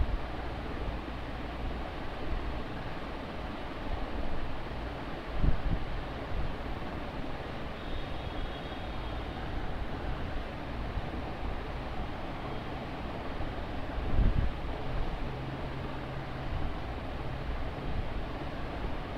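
Steady background rumble and hiss, with two dull bumps about five and fourteen seconds in.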